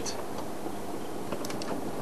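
Safari game-drive vehicle idling: a steady low engine hum under a faint hiss, with a few faint clicks about a second and a half in.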